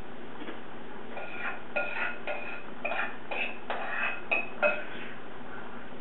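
Kitchenware clinking: about a dozen light, quick strikes with short ringing tones, starting a little after a second in and stopping near the five-second mark.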